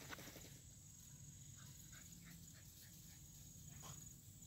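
Near silence outdoors: a faint steady high insect drone, a brief rustle at the start and a handful of faint short chirps in the middle.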